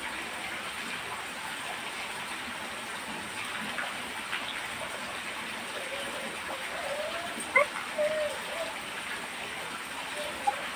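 A steady hiss of falling water, with a few faint short voice-like sounds and a sharp click about seven and a half seconds in.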